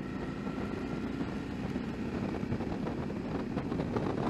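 Suzuki V-Strom 650's V-twin engine running steadily at a cruise, with wind noise on the microphone.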